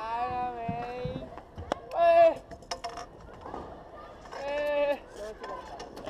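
Young voices shouting three long, drawn-out calls, with a few sharp knocks between them.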